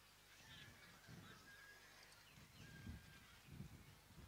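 Near silence: faint outdoor background with a few soft low thumps and some faint, short, high calls.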